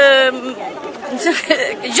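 Speech: a voice speaking Arabic, with other people chattering in the background.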